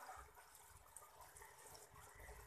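Near silence with a faint, steady water sound from a small aquarium filter running.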